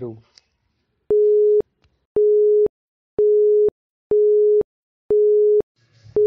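Countdown timer beeps: five identical steady mid-pitched electronic beeps, each about half a second long and about one per second, starting about a second in. They mark the time given to answer a quiz question.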